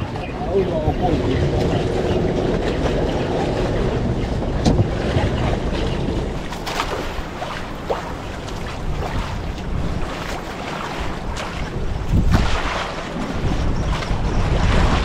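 Wind rushing over the microphone with choppy sea washing around a small outrigger boat, broken by a few light knocks.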